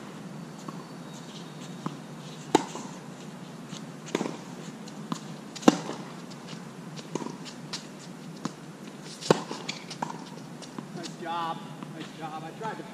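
Tennis rally on a hard court: sharp pocks of racket strings striking the ball, and the ball bouncing, roughly every one to one and a half seconds. The loudest hits come about three seconds apart.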